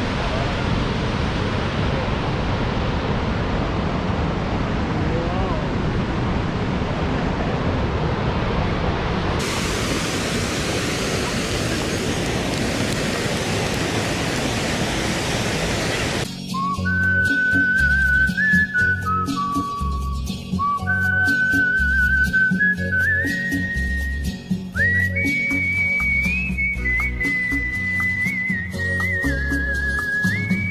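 Steady rush of water from Montmorency Falls, a large waterfall, for roughly the first half. Then, about sixteen seconds in, background music takes over: a whistled melody over a steady beat.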